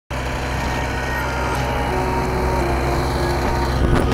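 John Deere 329D compact track loader's diesel engine running steadily.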